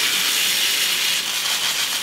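Hand-held water mister spraying a steady, unbroken hiss of fine mist onto the side of a reptile enclosure to raise the humidity.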